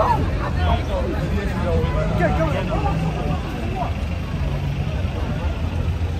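Busy city street ambience: passers-by talking, loudest in the first three seconds, over a steady low rumble of road traffic.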